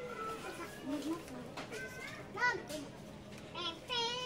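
Indistinct voices with children's voices among them, including brief high-pitched child calls about halfway through and near the end.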